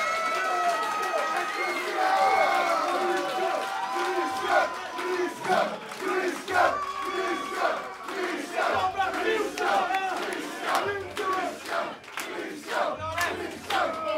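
Concert crowd shouting and cheering, many voices at once. Long held yells in the first few seconds give way to shorter, choppier shouts.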